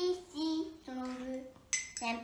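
A young girl's voice singing a few short, level notes, with a brief hiss near the end.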